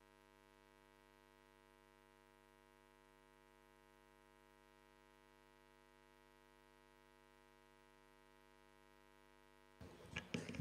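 Near silence: a faint, steady electrical mains hum with many evenly spaced overtones, unchanging throughout, with a brief rise of room noise near the end.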